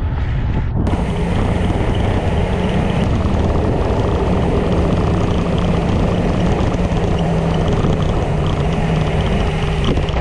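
Loud, steady wind rush over the microphone of a bike-mounted action camera, with tyre and road rumble, as a road bike rolls at speed along an asphalt road.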